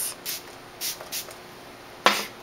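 MAC Fix+ setting spray mist bottle pumped in about three short spritzes, wetting an eyeshadow brush loaded with pigment.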